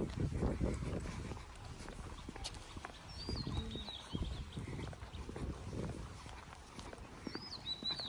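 Small birds chirping in short up-and-down phrases, twice: about three seconds in and again near the end. Underneath are irregular footsteps on stone paving.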